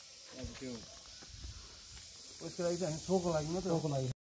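A man's voice talking in two short stretches, over a steady high-pitched hiss.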